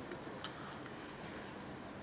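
Quiet room tone in a pause between speakers, with a couple of faint ticks about half a second in.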